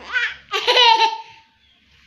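A young girl laughing in two high-pitched bursts, the second one longer, dying away about a second and a half in.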